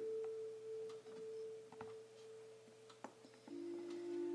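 Faint background music under a sermon: one soft, steady held note that gives way to a lower held note about three and a half seconds in.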